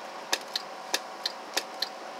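The relay on a homebuilt transistor RF amplifier clicking in and out, about six sharp clicks at uneven spacing over a faint steady hum.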